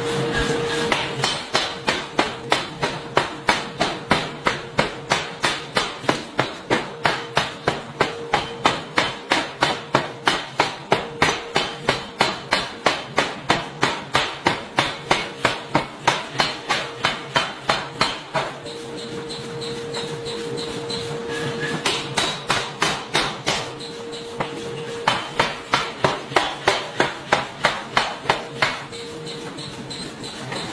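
Pneumatic forging hammer pounding a red-hot steel disc in a ring die, a fast, even run of heavy blows at about three to four a second. The blows stop for a few seconds past the middle, then resume in shorter runs, with a steady tone coming and going beneath them.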